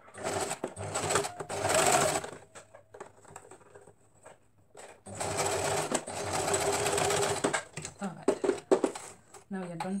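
Domestic electric sewing machine running a zigzag stitch over the elastic in a shorts waistband, in two runs of about two and a half seconds each with a pause between. A few sharp clicks follow near the end.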